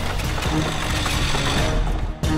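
A short music sting with a busy mechanical rattling effect mixed in, which drops away just after it ends.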